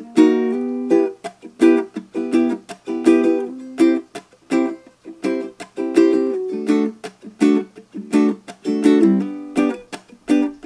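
Solo ukulele strummed in a steady rhythm, moving through the chords E minor, a high C shape up the neck, and G.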